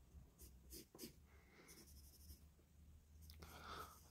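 Faint pencil strokes on a sheet of paper: a few short marks, then a longer scratching stroke about two seconds in.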